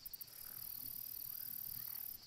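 Faint, steady chorus of crickets chirping, with a few quick high chirps at the very start.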